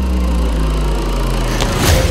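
Trailer sound-design boom: a deep sustained rumble with a slowly falling drone over a black screen, then a sharp hit near the end as the picture cuts back in.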